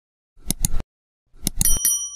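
Subscribe-button sound effect: two quick mouse clicks about half a second in, then more clicks and a short, bright bell ding that rings on briefly near the end.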